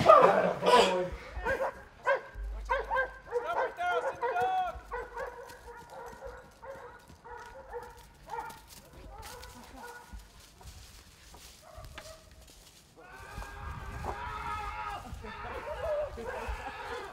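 A police working dog barking repeatedly, the barks coming thick and loud in the first few seconds and sparser after, with voices alongside.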